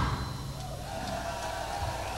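A live heavy metal band's song cuts off at the start. What is left is the low hum and hiss of a live audience recording, with a faint steady tone held underneath.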